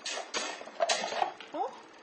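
Sharp plastic clicks and clatter from an electric fan's controls being worked by hand, about five clicks over the first second and a half. The fan's button has come off and the setting won't stay in place.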